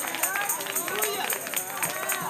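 Choir and congregation voices calling out praise together as the music ends, several voices overlapping, with a few handclaps.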